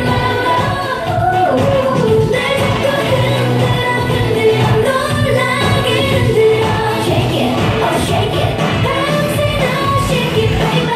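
K-pop dance song with female vocals, loud and continuous.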